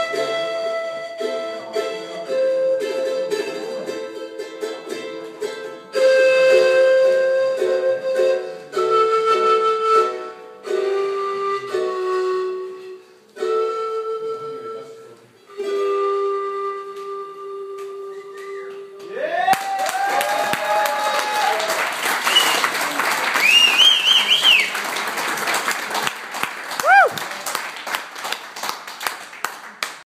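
A small stringed instrument plays a slow solo melody of long held notes, which ends about twenty seconds in. The audience then breaks into applause, with cheers and several whistles.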